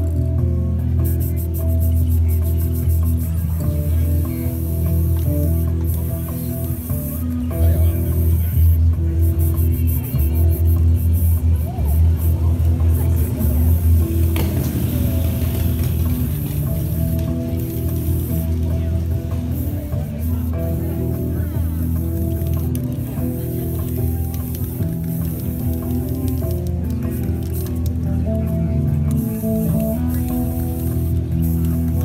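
Live music with a deep, looped bass line and cello, running steadily. Short hisses of aerosol spray-paint cans come and go on top of it.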